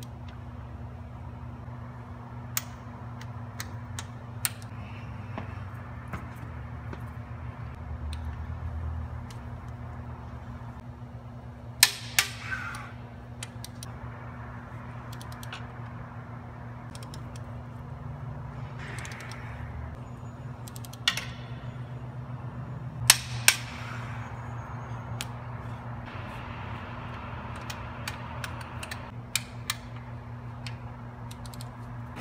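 Torque wrench clicking as the DT466 cylinder head bolts are tightened to spec: a sharp click every few seconds, some in quick pairs, with faint scraping of the wrench and socket between. A steady low hum runs underneath.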